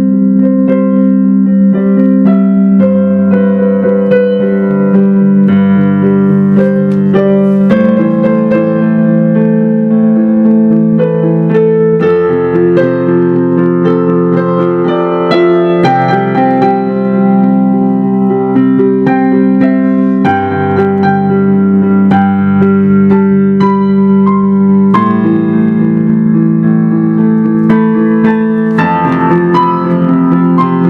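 Yamaha digital piano played in an improvised piece: held chords over a low bass note that changes every few seconds, with a melody of single struck notes above.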